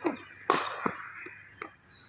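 Cricket bat striking a hard leather ball once, a sharp crack about half a second in, followed by a few faint knocks as the ball comes back down the pitch.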